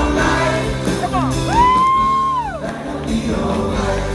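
Live rock band playing with vocals, recorded from far back in the audience. In the middle, one high held note slides up, holds for about a second and slides back down.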